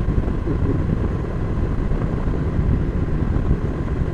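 Cruiser motorcycle under way at a steady road speed: the engine running under a steady low drone of wind and road noise.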